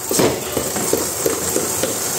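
Rear wheel of a Honda CG 160 spinning freely after a hand spin, its chain and sprockets running with a steady hiss and a few light ticks.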